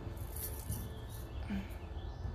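Faint handling noise from a phone camera being picked up and repositioned: a few small rattles and clicks over a steady low rumble.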